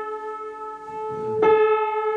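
A Förster piano: a single note rings and slowly fades, then the same key is struck again about one and a half seconds in.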